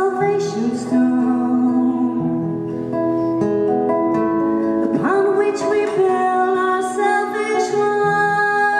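A woman singing live with acoustic guitar accompaniment, holding long notes and sliding up into a note twice.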